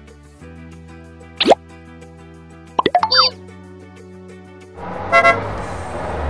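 Children's background music with cartoon sound effects: a quick up-and-down whistle about a second and a half in, a run of popping plops around three seconds in, and a rushing noise with a short tone near the end.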